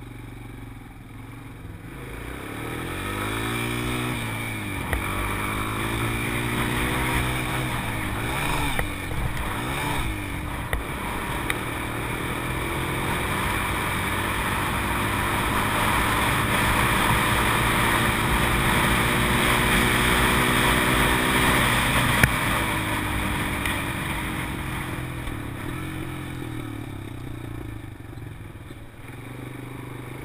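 A sport quad (ATV) engine runs under throttle on a dirt track. Its pitch climbs and drops again and again as the rider accelerates and shifts. It gets louder through the middle and eases off near the end.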